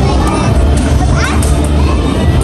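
A child's voice over loud background music with heavy bass; the voice rises sharply in pitch for a moment about a second in.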